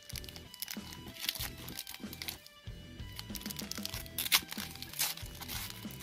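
Foil trading-card pack crinkling and crackling in the hands as its pink outer layer is peeled off, in irregular short crackles.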